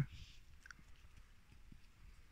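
Quiet outdoor background with a few faint, small clicks.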